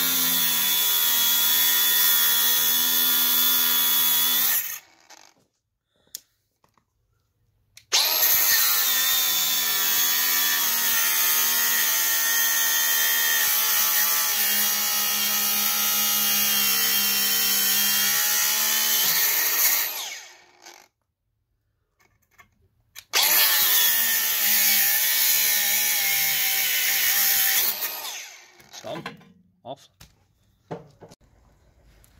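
Milwaukee cordless angle grinder cutting steel at a boat trailer's roller bracket: a steady high whine with a grinding hiss, in three long runs of about five, twelve and five seconds, with near silence between them.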